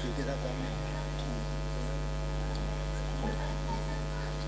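Steady 50 Hz mains hum from the microphone and sound system, with faint distant voices underneath.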